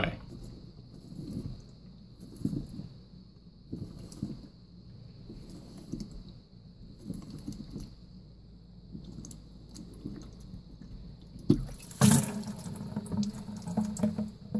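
Water trickling and splashing into a plastic bucket as a clear sediment-filter housing is unscrewed by hand from its head. The splashing gets louder near the end as the housing comes free and its water spills out.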